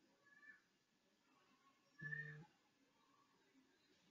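Near silence: room tone, broken by two faint, brief sounds, one about a third of a second in and a slightly stronger one about two seconds in.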